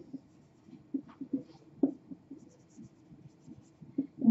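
Marker pen writing on a whiteboard: a series of short, faint squeaks and scratches as the letters are drawn.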